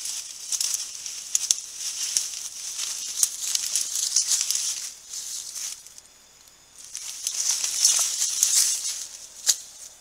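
Dry leaves and undergrowth rustling and crackling as a tiger moves through the brush around its kill, in two long bouts with a short lull about six seconds in. A faint insect hiss continues underneath.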